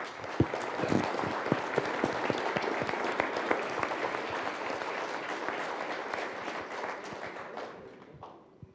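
Audience applauding: a full round of clapping that starts suddenly and tapers off near the end.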